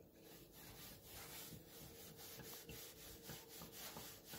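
Faint, irregular rubbing of a kitchen sponge scrubbing the plastic housing of a Moulinex Moulinette chopper.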